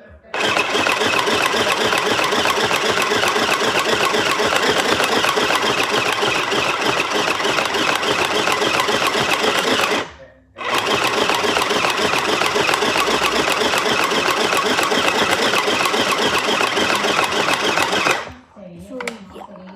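Small electric sewing machine running steadily and loudly close to the microphone, stopping for about half a second around ten seconds in, then starting up again.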